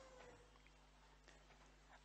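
Near silence: room tone with a low steady hum, and a faint thin tone sliding gently in pitch in the first half second.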